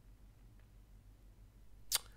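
Near silence with a faint, steady low hum, broken by a single short, sharp click just before the end.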